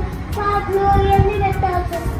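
A young boy singing in long, drawn-out notes that step down in pitch near the end.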